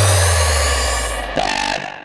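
Dubstep build-down before a drop: a held low synth bass note and a rising high-pitched sweep fade away together. A short stepped synth figure comes in about one and a half seconds in, and the music thins almost to nothing at the end.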